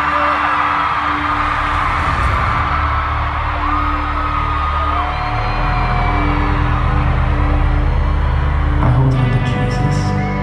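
Slow, sustained interlude music played over an arena sound system, with a deep held bass and pad under fans' held screams and whoops. About nine seconds in, new sounds enter as the next section begins.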